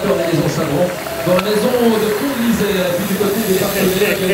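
Men's voices talking, with no clear words.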